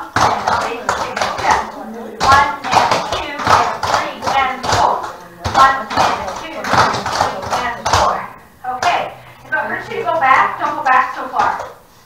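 Clogging taps clicking on a wooden floor as several dancers step through a routine, with a woman's voice talking over them.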